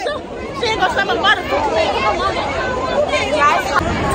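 Crowd chatter: many young people talking and calling out at once, no single voice clear.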